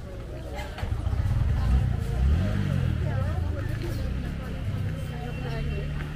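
Busy market street: passersby talking close by, over the low rumble of a motor vehicle, loudest about two seconds in.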